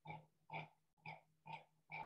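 Faint rhythmic pulses, about two a second, over a steady low hum.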